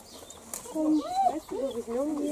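Voices talking, not picked up as words; no other clear sound.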